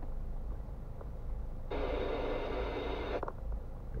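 Low, steady rumble of a car stopped in traffic, heard from inside the cabin. Near the middle a harsh, hiss-like noise starts abruptly, lasts about a second and a half, and cuts off suddenly.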